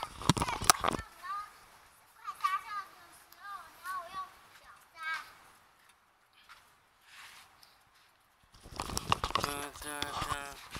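A high-pitched voice speaking in short phrases, with a few sharp clicks in the first second and a quiet stretch a little past the middle.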